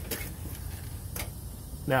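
Low, steady rumble of a semi-truck's diesel engine idling, with two faint clicks about a second apart.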